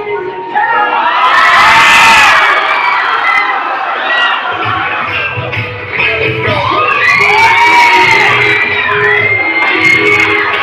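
A young crowd cheering, shouting and whooping, with music playing underneath. The cheering swells about two seconds in and again around seven to eight seconds.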